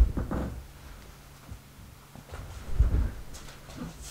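Soft rustling of a fuzzy fleece blanket being handled and laid over the edge of a bed, with two dull low thumps, one right at the start and one about three seconds in.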